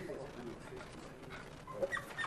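Faint, indistinct voices murmuring in a lecture room over a low steady hum, with a couple of brief louder sounds near the end.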